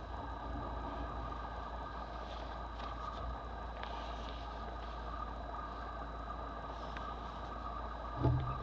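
Steady low background hum, with faint rustling of an old paper booklet being lifted and turned over by hand around the middle.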